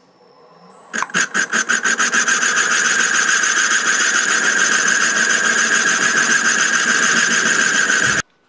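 MN-80 metal lathe turning a wooden mandrel: the cutter bites into the spinning wood blank about a second in. It makes a loud, fast, evenly pulsing cutting sound over the lathe's faint running whine.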